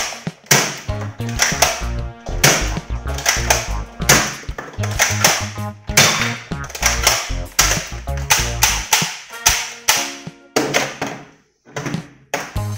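Background music with a steady beat and a heavy bass line, with a short dip near the end.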